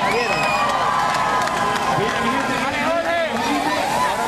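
Crowd of people talking and calling out over one another, with some cheering.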